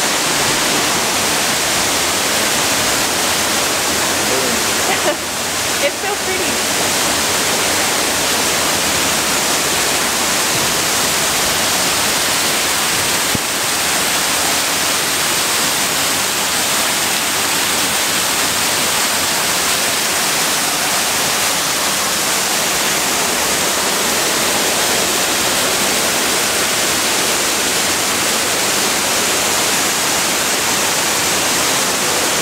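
Water falling down an indoor waterfall wall, a steady rushing hiss with a brief dip in level about five seconds in.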